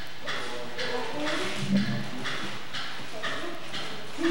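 A steady rhythm of short, hissy percussive strokes, about two or three a second, with voices underneath.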